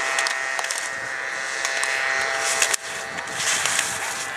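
Slalom gate poles clacking sharply several times as a ski racer knocks them aside with shins and arms, with skis scraping and hissing on hard snow. The clacks break off suddenly about three seconds in, and a louder scraping hiss follows.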